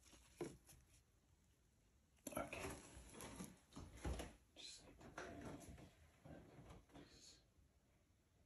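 Quiet whispered speech, starting about two seconds in and lasting about five seconds, with a brief soft handling sound near the start.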